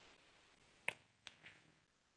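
Near silence with a faint hiss, broken by a sharp click about a second in and two fainter clicks just after.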